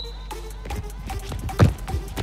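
A few running steps on artificial turf, then a single thump of a foot striking a football about one and a half seconds in. Quiet background music plays underneath.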